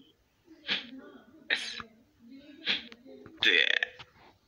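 A cartoon character's voice making burp-like vocal sounds in about four short bursts, with a low voiced hum between them.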